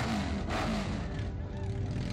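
Motorcycle and car engines running in a slow street procession, with voices shouting, under background music.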